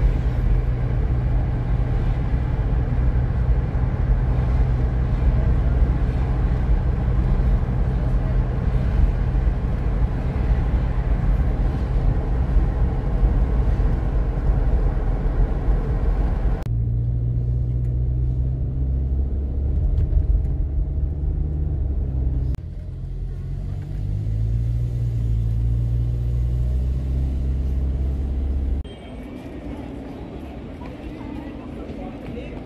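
Road and engine noise inside a moving car at road speed, a dense rush over a steady low drone. A little past halfway the sound turns suddenly duller, leaving mostly the low drone, which shifts in pitch a couple of times; it drops again near the end.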